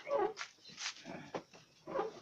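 Several short animal cries in quick succession, about five in two seconds.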